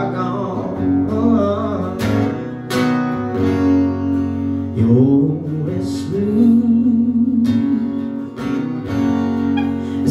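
Acoustic guitar strummed as a song's accompaniment, with a man's voice singing along at times.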